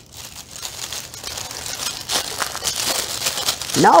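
Shiny metallic wrapping paper crinkling and rustling as hands squeeze and pull at it to get it open, a continuous run of small irregular crackles.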